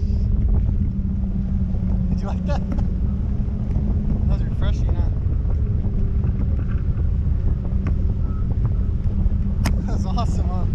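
Wind buffeting the microphone in flight under a parasail: a steady, heavy low rumble with a faint constant hum under it.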